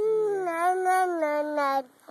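One long, howl-like vocal cry held for nearly two seconds, its pitch wavering and sagging slowly before it stops abruptly near the end.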